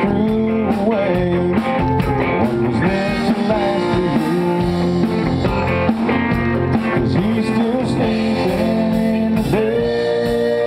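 Live country band playing a loud instrumental passage: an electric guitar leads with bent notes over a strummed acoustic-electric guitar and drums.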